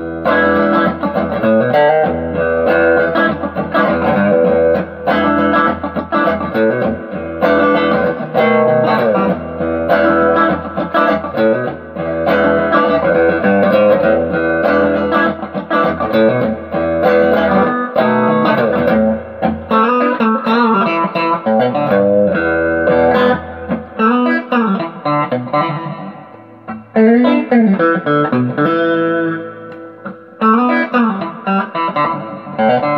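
Electric guitar, a Squier Affinity Telecaster fitted with Texas Special pickups, played through an amplifier as picked riffs and chords. Bent, wavering notes come in over the last ten seconds.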